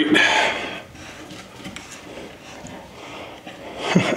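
A short forceful breath, then faint creaking and rubbing as a steel screw-in hook is turned by hand out of a wooden board, its threads grinding in the wood.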